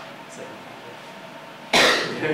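A single short, loud cough near the end, over quiet room noise.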